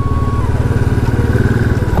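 Royal Enfield single-cylinder motorcycle engine running under way, a steady rapid low thumping from the exhaust, with rushing wind noise.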